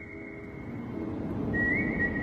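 A whistled melody in the film's background music: one long high note held until about a second in, then after a short gap another note that slides up a little and holds, over soft sustained backing.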